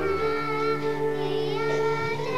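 Children singing long held notes, the pitch changing about half a second in and again near the end, over a low sustained accompaniment.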